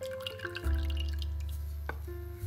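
Background music with sustained bass notes, over the trickle and drips of cream being poured into a steel saucepan of melted butter and water. There is a single sharp knock near the end.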